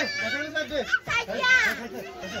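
Several people's voices overlapping, children's among them, talking and calling out in high voices.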